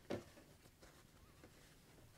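Near silence: room tone, with a faint short rustle just at the start as pieces of quilting cotton are handled on the sewing-machine bed.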